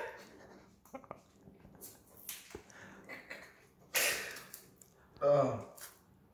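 Faint clicks and scratches of fingers picking at the seal on a small spice jar. A sharp breathy exhale comes about four seconds in, and a short vocal noise comes near the end.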